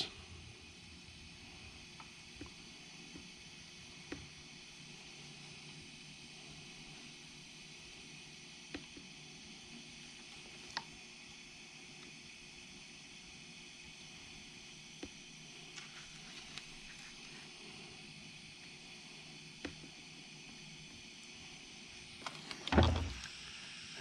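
A wire splice being soldered by hand, heard as a quiet steady background with a handful of faint, sharp ticks and clicks from the iron, solder and wires being handled. A short louder sound comes about a second before the end.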